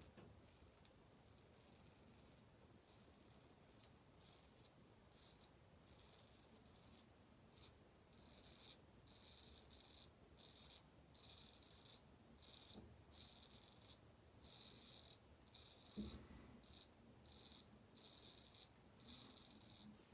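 Heljestrand MK No 4 straight razor scraping through lathered stubble on the cheek in a run of short, faint, crisp rasping strokes, about two a second, starting about two seconds in.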